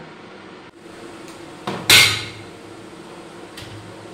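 Steel kitchenware clanking once, loudly, about two seconds in, with a faint click before it and a light tap near the end.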